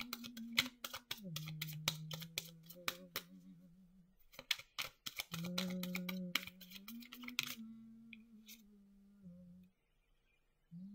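A person humming a few long, low held notes while shuffling a deck of tarot cards. The cards give a dense run of quick clicks that stops about seven and a half seconds in, while the humming carries on almost to the end.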